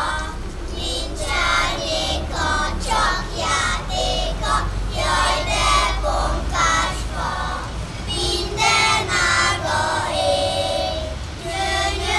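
A group of kindergarten children singing a Christmas song together, their voices continuous throughout.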